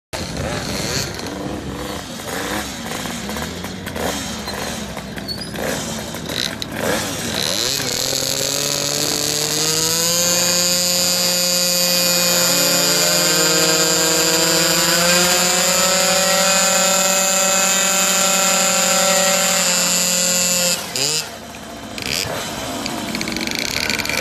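Tuned two-stroke scooter engine, typical of a big-bore Honda Dio: uneven running for the first several seconds, then about eight seconds in it goes to full throttle, its pitch climbing and then holding high and nearly steady for about ten seconds before cutting off abruptly.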